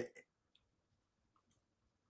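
Near silence in a pause between sentences: a man's voice cuts off at the very start, and there are a few faint clicks.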